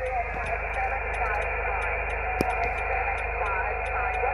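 Single-sideband receiver audio from an Icom IC-706 on the 20 m band: narrow, hissy band noise with faint, garbled voices of distant stations. A steady heterodyne whistle comes in past the halfway point, and there is one sharp click about halfway through.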